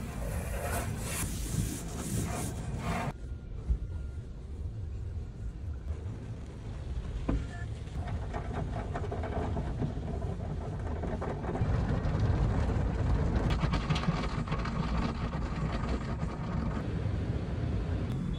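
A car being washed, heard muffled from inside the cabin: water spray and foam washing over the windshield and body, with a steady low rumble throughout and a brighter hiss in the first few seconds.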